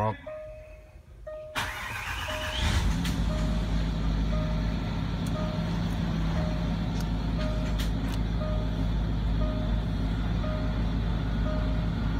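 Range Rover Sport engine being started by push button: about a second and a half in it cranks with a rising whine, catches and settles into a steady idle. A short electronic warning chime repeats about every two-thirds of a second throughout.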